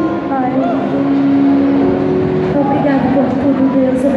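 Live worship music heard from inside a crowd: many voices singing over a held keyboard chord and the band, with a steady wash of crowd noise.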